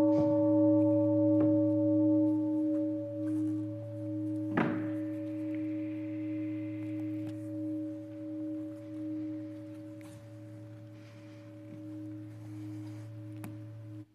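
Large metal standing bowl bell (singing bowl) ringing on after a single strike, several tones slowly dying away with a slow wavering pulse. A single knock about four and a half seconds in. The ringing stops suddenly at the end.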